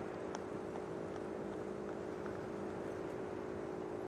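A steady low hum on two close pitches, holding even throughout, over faint outdoor background noise.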